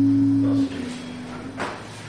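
The last chord of an amplified electric guitar rings on steadily, then is cut off sharply about half a second in. A short soft sound follows about a second later.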